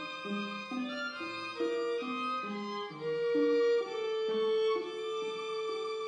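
A string trio with violin and cello playing. About halfway through, a high note is held steady over a lower line that moves in short notes about every half second.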